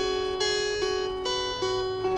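Guitar playing a melody of single plucked notes that ring on, a new note about every 0.4 seconds, with no singing.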